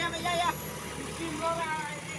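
A JCB backhoe loader's diesel engine running steadily, with men's voices calling over it.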